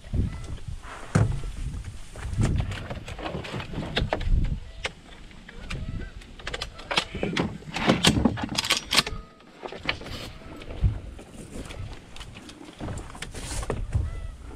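Gear being handled in a duck boat: irregular rustling, knocks and bumps against the hull, with a quick run of sharp scratchy sounds about halfway through as a shotgun is stowed in its soft case.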